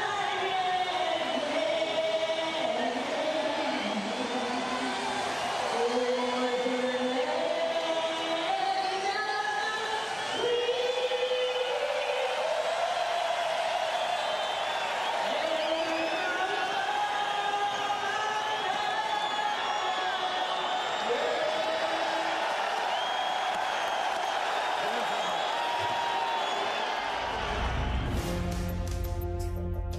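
Slow singing with long, wavering held notes over stadium crowd noise.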